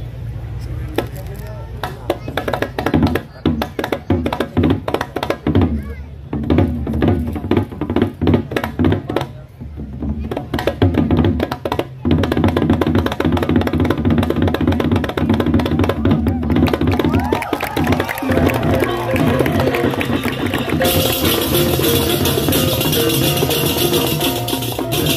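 Balinese baleganjur gamelan playing: kendang barrel drums beaten in fast runs broken by short pauses, over a steady low hum. Hand cymbals (ceng-ceng) come in loudly about three seconds before the end.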